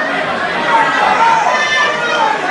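Crowd of people talking and calling out over one another, many voices overlapping into a loud babble.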